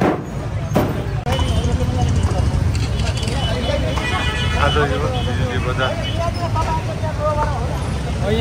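Street traffic: motorcycle and car engines running with a steady low rumble, and voices talking nearby. Two sharp knocks come in the first second, followed by a brief break in the sound.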